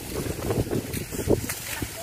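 Wind buffeting the microphone, an uneven low rumble, with a few brief crackles.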